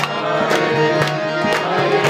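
Kirtan music: a harmonium holding sustained reedy chords over a steady percussion beat, with sharp strikes about twice a second.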